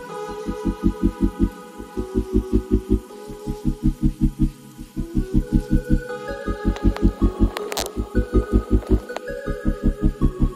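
Background music: a pulsing bass beat about five times a second under held chord tones that shift every second or two, with a short noisy swell about three-quarters of the way through.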